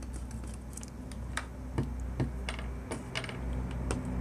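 Soldering iron working a solder joint on a TV circuit board: small, irregular clicks and crackles about every quarter to half second, over a steady low hum.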